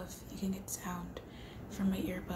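A woman's voice speaking softly in short, broken phrases.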